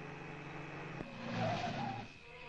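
Jeep engine running as the jeep drives up, growing louder from about a second in, with a short squeal of tyres near the end.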